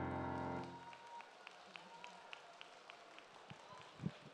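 The last sustained chord of an electronic stage keyboard fades and stops under a second in, followed by faint, scattered clapping from the audience.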